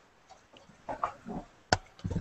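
Faint, brief voice sounds over a video-call line about a second in, then a single sharp click near the end.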